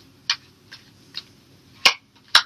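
Tarot cards being handled on a table while a new card is drawn: four short clicks, the last one the loudest, near the end.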